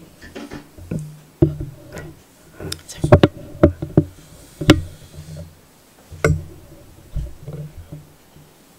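Handling noise from a microphone on a stand being moved and adjusted: irregular sharp knocks and dull bumps, thickest about three to five seconds in.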